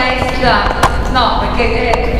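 A woman talking into a handheld microphone, with one sharp tap a little before the middle.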